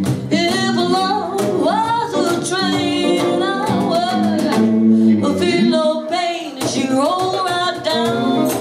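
A woman singing a song live with a band: acoustic guitar strummed under her voice, with electric guitar and drums.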